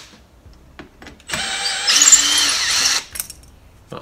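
Cordless drill-driver backing a screw out of a door jamb's metal latch strike plate: one run of about a second and a half starting just over a second in, the motor pitch stepping up partway through.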